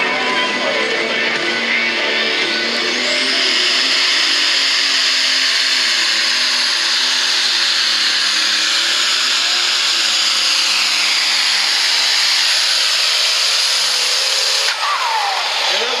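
Superstock pulling tractor's turbocharged diesel engine at full throttle during a pull, loud and steady, its pitch slowly falling through the middle of the run as the sled's load builds. The sound breaks off suddenly near the end.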